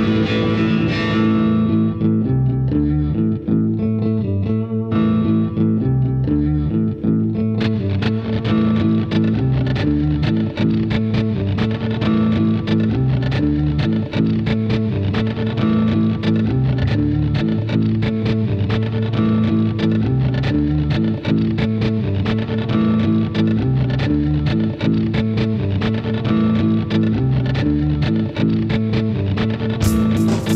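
Instrumental guitar music: a repeating low guitar riff, joined about seven and a half seconds in by a steady ticking percussion beat.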